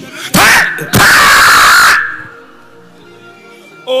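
A loud, overloaded shout through a PA microphone, a short burst and then about a second of distorted, held yell. Faint sustained music notes follow.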